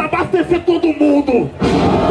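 A man rapping freestyle into a microphone in quick rhythmic syllables over a hip hop beat, with the verse ending about a second and a half in.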